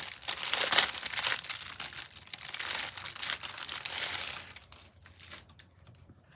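A clear plastic packaging bag crinkling and rustling as it is opened and the fabric is pulled out. The sound is loud and continuous for about four seconds, then dies away near the end.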